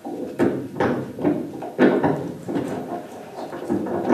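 Objects handled close to the microphone: an irregular run of knocks and clatter as the draw lots are picked out.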